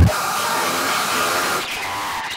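Hard electronic dance track breaking down: the pounding kick and bass cut out at the very start, leaving a loud, sustained white-noise hiss with faint synth tones beneath it.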